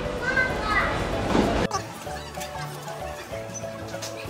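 A child's high voice over busy background noise, cut off suddenly less than halfway in, followed by background music with a steady low beat and repeating notes.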